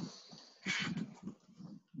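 A person's faint breathing between sentences: two short, soft breaths, the second just under a second in.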